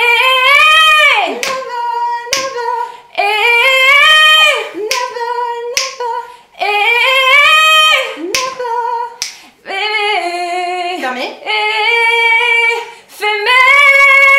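Two women's voices singing a wordless vocal exercise in the high register: short phrases of about a second or two, one after another, many sliding up and then holding a high note.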